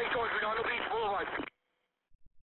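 Radio dispatch voice traffic, thin and band-limited as heard through a two-way radio, cutting off suddenly about a second and a half in.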